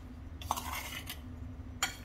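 A metal spoon against a bowl of dry, crumbly mix: a light clink and a soft scrape about half a second in, then a sharper clink near the end as the stirring starts.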